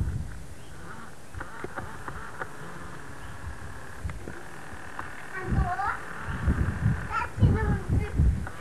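Old camcorder recording: steady tape hiss with a faint steady high hum, then from about halfway in a young child's short high vocalisations that glide down in pitch, over low bumps of movement or wind on the microphone.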